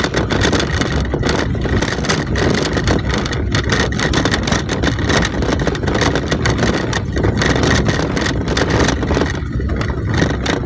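Car driving along a rough, patched village lane, heard from inside the cabin: steady engine and tyre noise with frequent small knocks and rattles from the bumpy surface.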